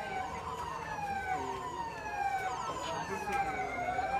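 Emergency vehicle siren wailing: a pitched tone that falls slowly in pitch, over and over about once a second, and begins to rise again near the end.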